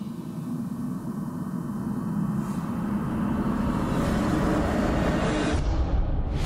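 A low rumbling drone in the background score, swelling steadily louder: a suspense build-up.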